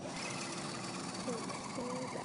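Small electric motor and gearbox of an RC4WD Trailfinder 2 scale RC truck running steadily while it plows snow.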